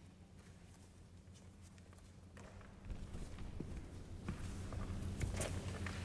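Footsteps and clothing rustle of a person walking across a carpeted wooden stage, starting about halfway through, over a low steady hum.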